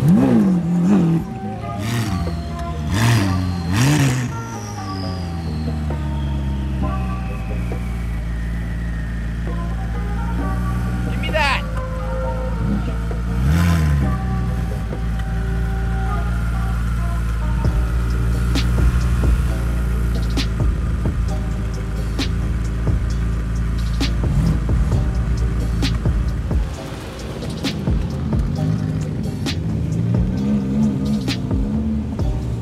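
Supercar engines revving and running as the cars pull in, with several quick rises and falls in pitch in the first few seconds and another about halfway through, under steady background music.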